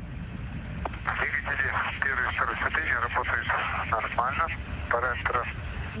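Air-to-ground radio voice in Russian, with a steady low rumble beneath it.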